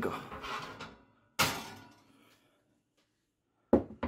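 A glass baking dish taken out of an oven and set down on a wooden board, with two sudden knocks: one about a third of the way in that fades over about a second, and a sharper one near the end.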